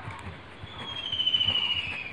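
Pen writing on paper, with soft faint strokes. Over the writing, a high thin whistling tone sets in before the first second and slides slowly down in pitch; it is the loudest sound.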